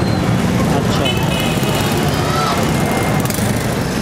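Steady market din: indistinct background voices over a continuous low rumble of engines and traffic.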